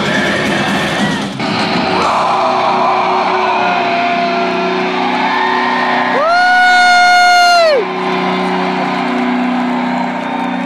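Live heavy metal band heard from the middle of the crowd through a phone microphone, with crowd noise under it. About six seconds in, a loud yell close to the microphone is held for about a second and a half and drops in pitch as it ends.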